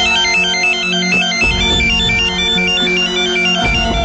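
Phone ringing with a melodic electronic ringtone: a repeating tune of short, high beeps stepping up and down, signalling an incoming call, over dramatic background music.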